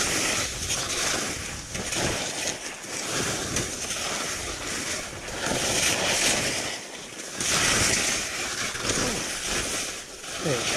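Skis hissing and scraping over snow, mixed with wind rushing over the action camera's microphone, swelling and fading in surges every couple of seconds as the skier turns downhill.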